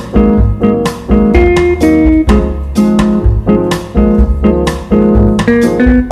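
Remixed elevator music: a plucked, guitar-like melody over a heavy bass beat, with notes striking about twice a second.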